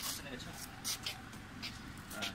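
Faint, brief speech sounds and short hisses over a low steady hum, in a lull between spoken phrases.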